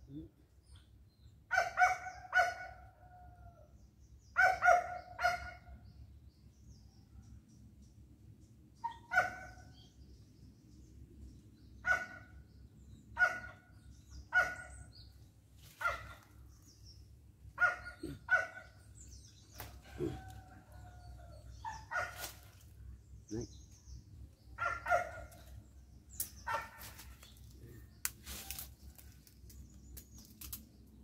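Chickens calling: short pitched calls, often in pairs, repeating every second or two.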